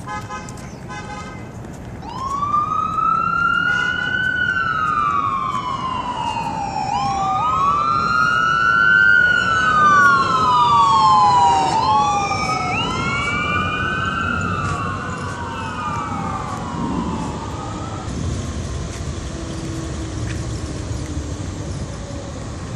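Emergency vehicle siren wailing in slow sweeps that rise and fall in pitch, two sirens overlapping in the middle and loudest there, dying away near the end. It opens with a short burst of rapid pulses, over a steady hum of street traffic.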